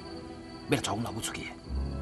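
A voice speaking briefly in the middle, over soft, steady background music.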